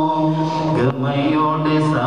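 A man singing a devotional song in praise of Shihab Thangal. He holds one long note, which breaks off just under a second in, then starts the next phrase.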